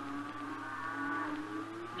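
Cattle lowing in the background: one long, low moo that drifts a little in pitch and fades near the end, quieter than the dialogue around it.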